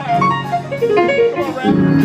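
Live keyboard and organ music: a quick run of notes falling in pitch over held chords, with a new low chord coming in near the end.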